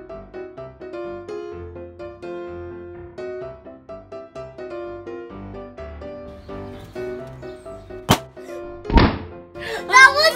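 Light background music plays throughout. About eight seconds in, a latex balloon bursts with a sharp pop, broken by limonene squeezed from orange peel onto it. About a second later comes a louder thump.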